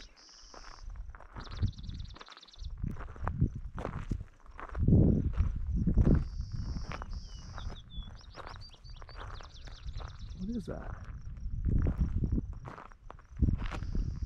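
Footsteps on a gravel hiking trail, with high buzzy trills, each about half a second long, repeating several times over them.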